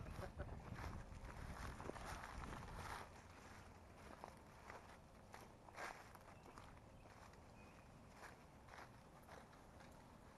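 Footsteps through brush, an irregular run of soft crunches and crackles. A low rumble underlies the first three seconds, after which it is quieter.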